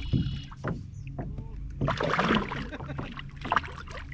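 Splashing and knocking close by a kayak as a hooked largemouth bass is brought alongside, loudest about two seconds in, over a steady low hum.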